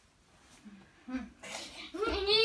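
A child's wordless vocal sounds begin about halfway through: short voiced grunts, then a breathy, hissing burst near the end.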